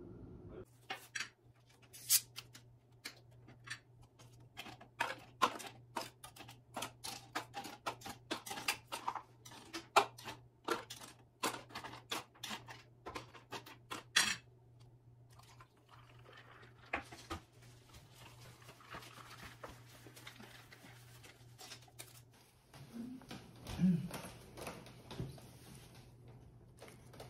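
Table-top handling: a quick run of light knocks and clicks as paper cups, a plastic cola bottle and a cardboard takeaway chicken box are set down and moved, over a low steady hum. The clatter thins out about halfway through.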